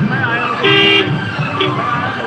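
A horn tooting twice, a short blast about two-thirds of a second in and a briefer one near the end, over crowd chatter.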